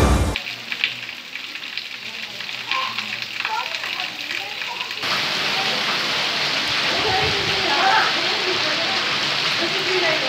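Heavy rain falling steadily, a continuous hiss that steps up louder about halfway through, with faint voices in the background.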